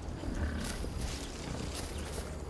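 American bison grunting briefly about half a second in, with a few dull thuds of hooves and a steady low rumble.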